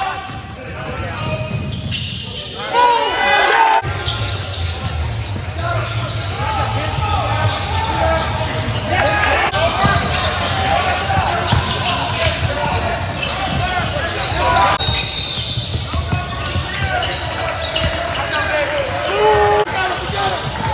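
Live basketball game sound in an echoing gym: a ball bouncing, sneakers squeaking on the hardwood, and indistinct shouts from players and onlookers.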